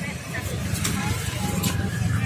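Hydraulic floor jack being pumped by its handle, giving a couple of sharp clicks, over the steady low rumble of a running vehicle engine.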